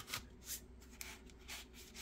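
Faint handling noise: hands gripping, turning and rubbing the plastic body of a cordless blower, with a few soft knocks.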